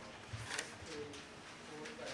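Faint, low cooing calls, a few short tones, with a brief rustle like a page being handled about half a second in.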